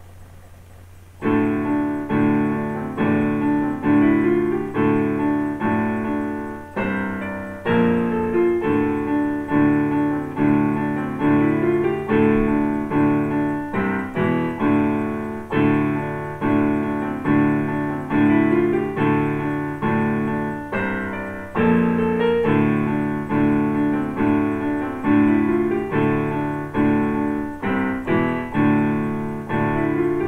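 Electronic keyboard in a piano voice playing a repeating riff of chords in D, about two notes a second. It starts about a second in and runs on with a low steady hum beneath.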